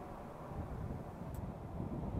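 Faint outdoor background: a low, steady rumble of wind on the microphone.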